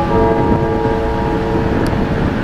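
A class 730 diesel locomotive running as it moves off: a low rumble with a chord of steady held tones above it, which fades near the end.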